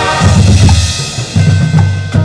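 Marching band low drums pounding out heavy strokes in two loud clusters, while a held band chord dies away in the first half second.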